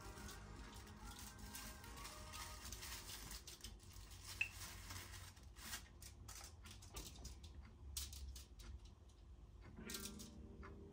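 Quiet food-preparation handling sounds: scattered soft taps and clicks from a silicone pastry brush, a mug, a knife and a foil-lined baking tray as sausage rolls are brushed and pastry is cut. There is one sharp clink about four and a half seconds in.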